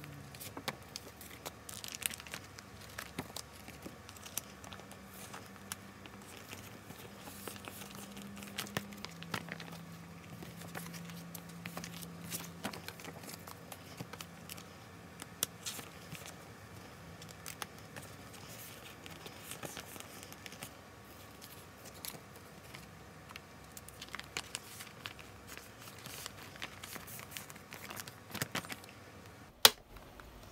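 Clear plastic binder sleeves and paper postcards being handled, with repeated crinkling and rustling and small taps as cards are slid into the pockets. Near the end comes one sharp click, the loudest sound, from the binder's metal rings being snapped.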